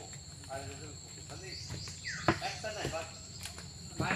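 Insects droning steadily at two high pitches, with faint voices and a single sharp knock a little after two seconds in.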